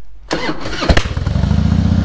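Harley-Davidson Heritage Softail Classic V-twin being started: brief cranking, then the engine catches with a loud bang about a second in and settles into an even, lumpy idle.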